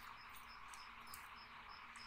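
Faint crickets chirping, a short high chirp about three times a second, over a steady faint hiss.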